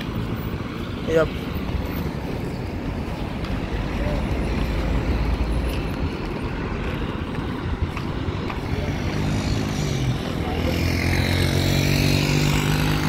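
Road traffic on a paved main road: a steady low rumble of passing vehicles. In the last few seconds a motorcycle engine approaches, its hum growing louder.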